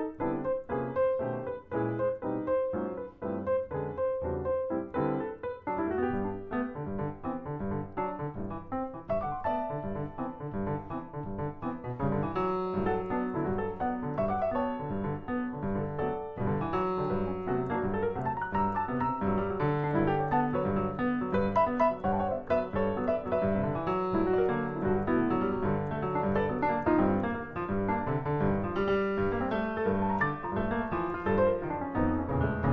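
Solo jazz piano played on an acoustic grand piano: a continuous stream of chords and melody over bass notes, growing fuller and louder about twelve seconds in.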